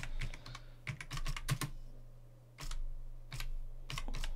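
Computer keyboard keystrokes as a terminal command is typed: a quick run of key clicks in the first second and a half, then a few single keystrokes spaced out.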